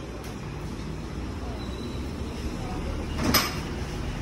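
Motorcycle workshop background: a steady low rumble, with one sharp clack about three seconds in.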